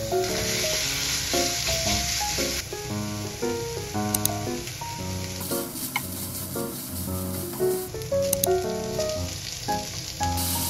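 Ground meat sizzling in a nonstick frying pan as it is stir-fried and broken up with a spatula. The sizzle is strongest in the first two or three seconds. Background music with plucked, piano-like notes plays throughout.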